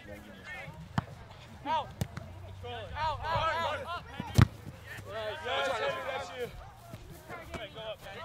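Soccer ball being struck, sharp thumps about one, two and four and a half seconds in, the last the loudest, with players shouting across the field.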